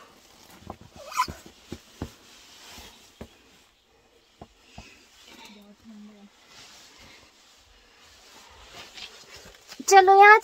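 Scattered light knocks and scuffs of people crawling through a tight rock cave passage, bodies and hands brushing against rock, with faint voices in the background.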